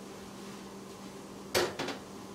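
Empty glass mixing bowl set down on the kitchen counter: two sharp knocks in quick succession about a second and a half in, over a faint steady hum.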